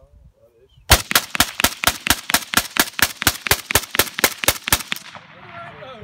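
Rifle firing a rapid, evenly paced string of about twenty shots, roughly five a second, starting about a second in and lasting about four seconds, the first shot the loudest.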